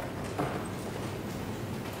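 A pause between speakers: steady low background noise of the courtroom microphone feed, with one faint brief sound about half a second in.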